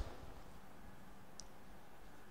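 Quiet room tone with a short click at the start and a faint high tick about one and a half seconds in, as a marker is brought up to a whiteboard.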